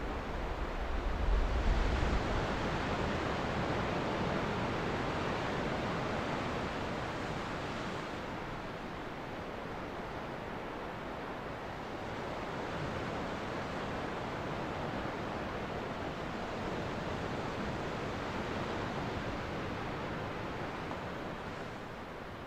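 Ocean surf washing onto a beach: a steady rushing of breaking waves that swells and eases, with a low rumble of a wave about a second in.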